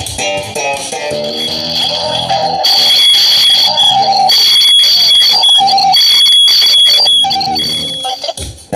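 Electric bass guitar played in a melodic line, heard over a video-chat connection. About a third of the way in, the music gets louder and a high tone pulses along with it.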